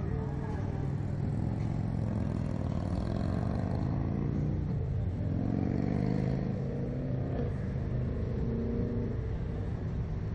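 Steady low rumble of wind and road traffic heard from high up on a Slingshot ride capsule, with a vehicle engine note rising in pitch about halfway through.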